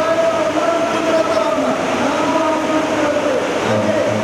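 A man's voice drawing out long, wavering notes in the sung or chanted delivery of Yakshagana talamaddale, with the pitch sliding between held notes.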